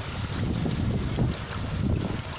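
Wind buffeting the microphone in a steady low rumble, over water moving in a fish tank.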